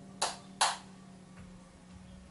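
Two sharp clacks in quick succession, less than half a second apart, as a metal espresso portafilter is knocked or set down while coffee is prepared, over a low steady hum.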